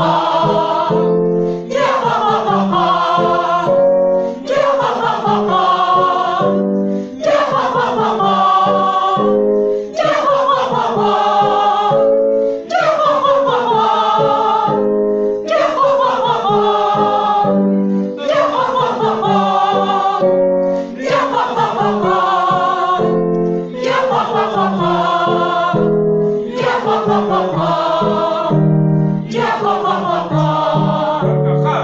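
A group of mostly women's voices singing a staccato 'ya' warm-up exercise in unison. A short phrase with a falling pitch line repeats about every three seconds, with a brief breath between repetitions.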